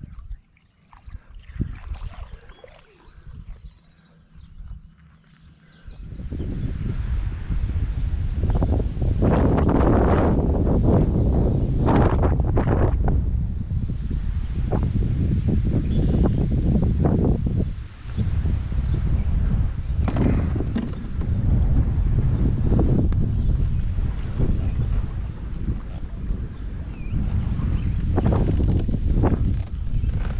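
Gusty wind buffeting the microphone, starting suddenly about six seconds in after a few quiet seconds and rising and falling in gusts. It is the wind ahead of an approaching thunderstorm.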